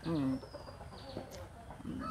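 Chickens clucking faintly after a brief voice sound at the start, with a rooster beginning to crow right at the end.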